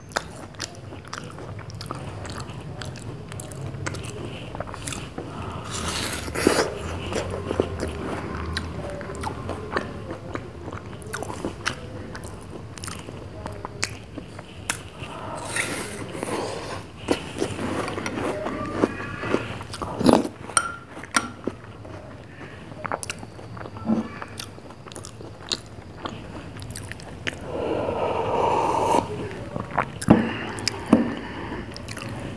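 Close-miked mouth sounds of eating ice cream falooda: repeated bites, chewing and wet lip smacks. Many short sharp clicks are scattered through it, with a few longer soft slurping stretches.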